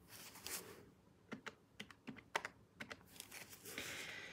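Faint, irregular clicks of small calculator buttons being pressed, about eight in a couple of seconds, with soft rustling of paper banknotes being handled at the start and near the end.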